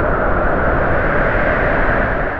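Wind sound effect: a loud, steady rush of noise with no tone or rhythm.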